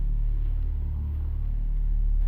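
A steady low droning hum with no clear events in it.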